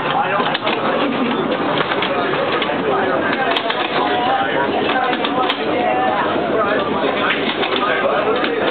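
Overlapping chatter of several passengers' voices on board a streetcar, steady throughout, with a couple of sharp clicks in the middle.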